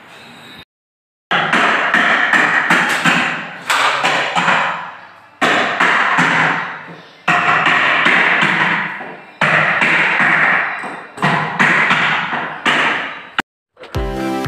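Repeated hammer blows, struck in quick clusters, each cluster ringing out in a long echo in a large, bare room.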